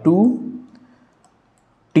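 A few faint clicks of a stylus tapping on a pen tablet while writing, after a single spoken word.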